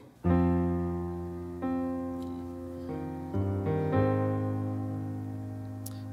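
Slow piano chords, each struck and left to ring and fade. The first comes about a quarter second in, and a few quicker chord changes follow around the middle.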